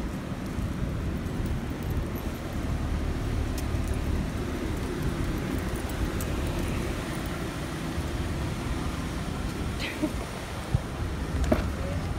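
Steady low rumble of road traffic, with a few light clicks near the end.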